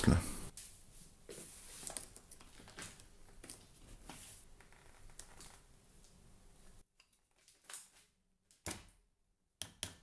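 Faint clicks and rustles of hands handling an umbrella and a small iron upholstery nail. Near the end come three or four sharp, separate hammer taps driving the nail through the umbrella's top ring (the plaque) into the shaft.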